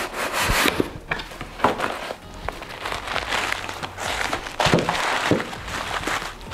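Cardboard shipping box being opened by hand: flaps scraping and rubbing against each other, with knocks of cardboard and the rustle of white plastic wrapping being pulled out.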